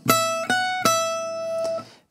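Gypsy-jazz acoustic guitar playing three picked notes on the high E string at the 12th, 14th and 12th frets (E, F-sharp, E), picked down-up-down. The third note rings for about a second before fading.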